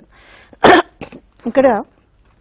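A woman coughs once, sharply, a little over half a second in, then makes a short voiced throat-clearing sound.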